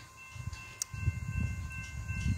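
Distant diesel locomotive horn sounding a steady held chord as a freight train approaches, under an uneven low rumble.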